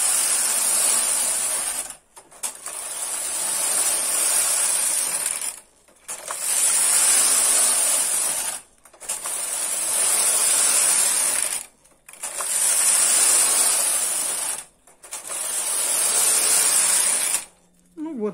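Carriage of a punchcard knitting machine pushed back and forth across the needle bed, knitting rows: six passes, each a steady mechanical run of two to three seconds with a brief stop as it turns at each end.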